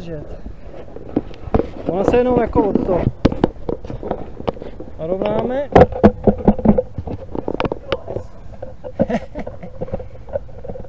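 A man's voice calling out twice without clear words, among knocks, taps and rubbing from an action camera being handled.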